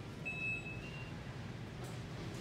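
Steady retail-store background noise, with a brief electronic beep about a quarter of a second in and a shorter, slightly higher beep just after it.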